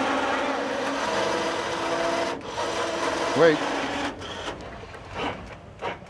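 Electric motors and cable winch of a hand-built model Marion dragline running with a steady whirring hum and rasping gear noise as it hauls cable. It stops briefly about two seconds in, runs again, and stops about four seconds in, followed by a few light clicks.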